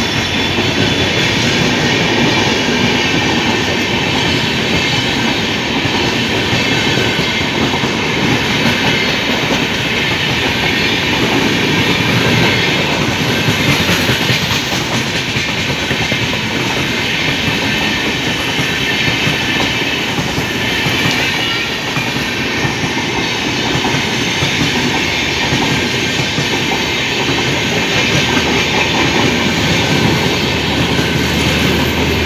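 Express train of red LHB passenger coaches running through the station at speed on the track beside the platform: a steady, loud rush of wheels on rail that continues without a break.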